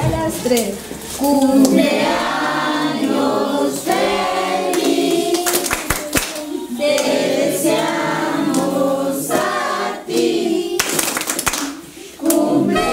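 A group of voices singing a birthday song together in front of the lit birthday cake, with a few claps.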